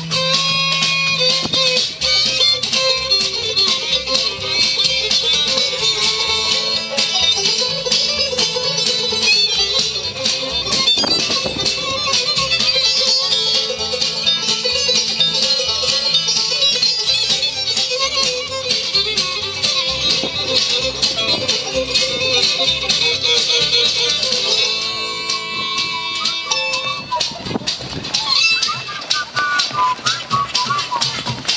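A bluegrass band playing live, with fiddle, acoustic guitar, snare drum and upright bass, to a steady beat.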